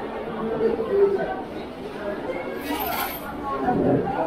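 Background chatter of many people talking at once in a large indoor hall, with a brief hiss a little before three seconds in.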